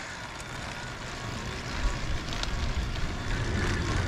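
Wind rushing over the camera microphone and tyre noise from a recumbent e-trike rolling along a paved road, a steady, unsteadily gusting rush heaviest in the low end.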